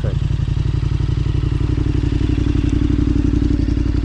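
Motorcycle engine running at idle with a steady, even low pulse.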